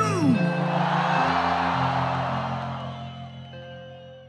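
Live concert music with crowd noise: a note slides down at the start, then sustained chords change every half second or so, and the whole mix fades out.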